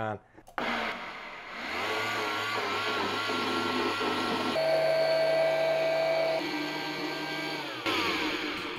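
Countertop blender pureeing hot boiled cauliflower into a creamy mash. The motor starts about half a second in, runs steadily, steps up in pitch about halfway through, then winds down near the end.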